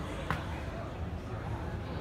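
Indistinct crowd chatter and hall hubbub, with a single sharp knock about a third of a second in.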